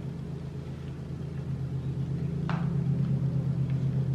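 A steady low mechanical hum with a faint even pulse, and a single short click about two and a half seconds in from a metal spoon against an ice cream cup.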